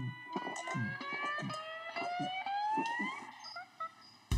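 A man gulping down a drink, a quick run of swallows, under a slowly rising whistle tone, a comic sound effect that ends about three seconds in.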